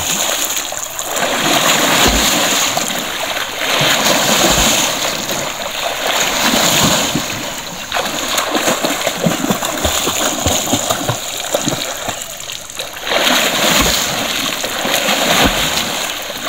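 A swimmer's kicking legs and arms splashing through shallow river water, in spells of churning splashes with a few short lulls.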